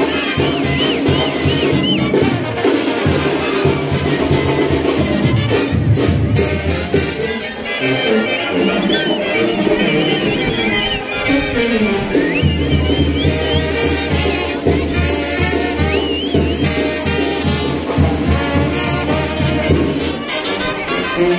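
A brass band playing: trumpets and trombones over a steady low bass line that grows heavier about two-thirds of the way in.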